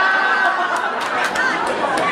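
Crowd of guests chattering, many voices overlapping, with a few sharp clicks around the middle.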